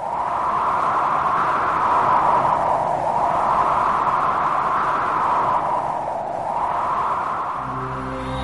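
A rushing, wind-like whoosh of noise that swells and fades in slow waves about every three seconds. Music with steady sustained notes comes in near the end.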